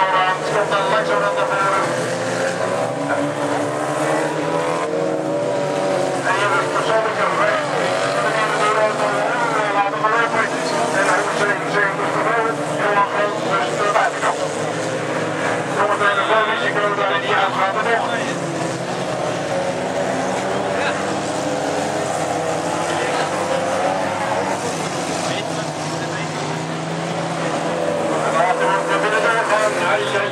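Engines of several small race cars revving up and down as they race, their pitch rising and falling with acceleration and braking.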